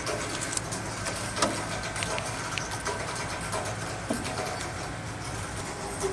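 1929 Peugeot 201's four-cylinder side-valve engine idling steadily, with a few faint clicks.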